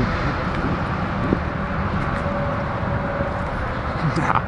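Steady hiss of road traffic from a nearby street, with a faint steady tone in the second half.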